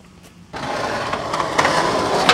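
Skateboard wheels rolling steadily on concrete, starting about half a second in.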